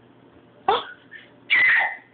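Short startled vocal exclamations: a sharp gasped "Oh" about two-thirds of a second in, then a second brief, louder cry near the end.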